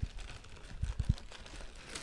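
Faint handling noise: a few soft taps and knocks about a second in, over low room tone.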